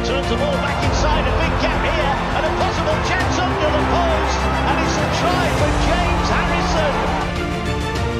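Background music playing throughout, mixed with a stadium crowd cheering and shouting as a rugby league try is scored; the crowd noise drops out about a second before the end, leaving only the music.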